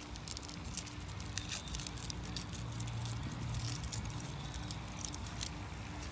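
Thin foil candy wrapper being peeled off a chocolate Oreo egg by hand: a run of small irregular crackles and crinkles. A faint steady low hum sits underneath.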